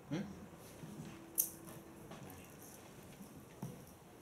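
Quiet room between songs: faint low voices, a soft steady note held for about a second, and one sharp click about a second and a half in.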